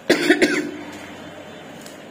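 A person coughing, a short burst of a few coughs in the first half second.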